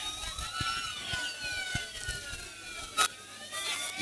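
Faint police sirens wailing, several pitches sliding up and down across one another, with one short click about three seconds in.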